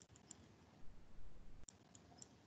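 Faint, sparse high-pitched clicks in small clusters, a few near the start and a couple near the end, over low background hiss.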